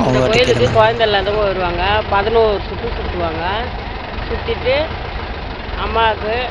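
A woman talking, her voice strongest in the first couple of seconds and broken by short pauses, over a steady low rumble.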